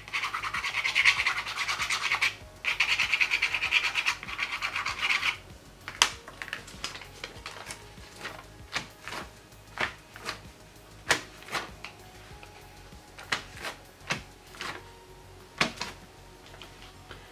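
Fast, scratchy scrubbing of a tool across paint-covered watercolour paper in two bursts over the first five seconds, then scattered light clicks and taps of paper handling as a printed book page is pressed onto the wet acrylic and lifted off.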